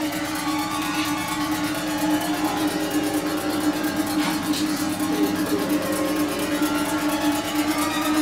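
Techno DJ mix playing: a steady held low note under fast, evenly spaced hi-hat ticks.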